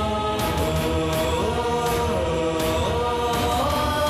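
Background score of a chanted choral drone: long held notes that slide from one pitch to another, with percussive hits repeating through it.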